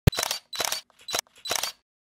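Edited sound effects: a sharp knock, then four short hissing bursts about half a second apart, with a thin high tone running through them.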